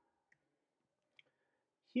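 Near silence broken by two faint, short clicks about a second apart, then a man's voice starts speaking right at the end.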